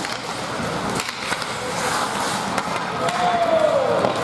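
Ice hockey play: skates scraping and carving the rink ice in a steady hiss, with scattered sharp clacks of sticks on the puck and ice. Near the end a drawn-out shout falls in pitch.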